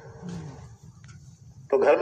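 A pause in a man's talk with a faint, brief low vocal sound just after the start, then his speech resumes loudly near the end.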